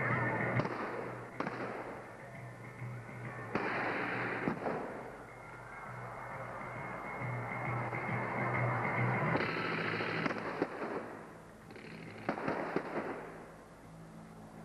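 Stage battle effects: a series of sharp bangs from gunfire and pyrotechnic charges, about eight spread irregularly, some in quick pairs, over steady background music.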